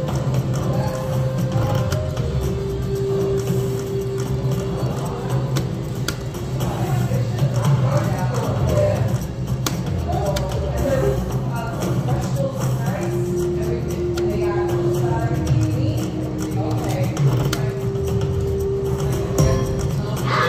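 Wolf Run Eclipse slot machine playing its reel-spin music and sound effects through several spins in a row, with held tones that recur every few seconds. Behind it is a steady casino hum with indistinct voices.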